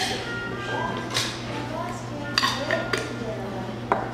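Metal bar spoon clinking against a glass jam jar and a metal mixing tin as jam is scooped out, a few sharp clinks spaced about a second apart, over faint background music.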